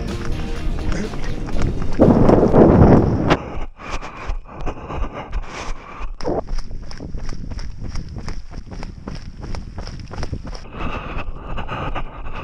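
Running footsteps on stony desert ground, about three strides a second, over background music. A loud rush of noise comes about two seconds in.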